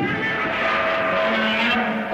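A monster character's growling, roar-like voice standing in for speech. It is one continuous call with a shifting pitch and starts abruptly.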